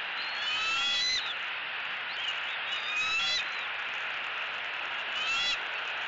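Bald eaglets' high chirping calls during a feeding, in three short bursts of several quick notes each: near the start, in the middle and near the end. They sit over a steady background hiss.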